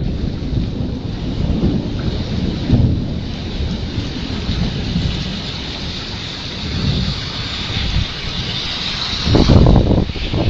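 Heavy rain falling with a steady hiss, under uneven low rumbles of thunder that swell loudest near the end.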